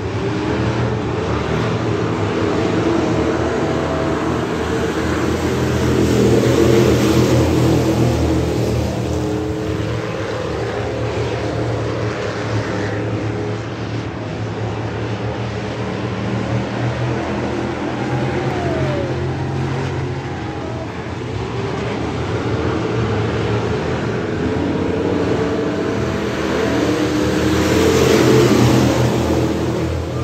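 A pack of Thunder Bomber stock cars racing on a dirt oval, their engines running together in a steady drone. The drone swells louder as the pack passes nearer, about six seconds in and again near the end.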